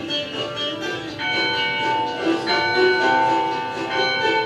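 The church's L.M. Rumsey No. 6 bell ringing, its clapper striking about every second and a quarter, each stroke ringing on into the next. The sound comes from a video played back through the hall's speakers.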